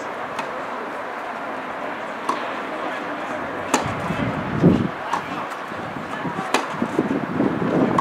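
Tennis ball struck by rackets in a rally on a clay court: a series of sharp pocks about a second and a half apart. A louder, muffled low sound comes midway and again near the end.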